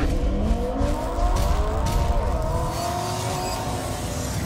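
Car engine revving: its pitch climbs in the first second, then holds high over a low rumble.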